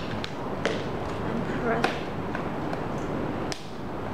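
A few sharp clicks and taps as a charging cable's plug is handled and pushed into the socket of a power bank in a zip case, the loudest click near the end. A brief voice sound comes about halfway through.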